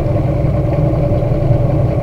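V6 outboard motor running with a steady low hum.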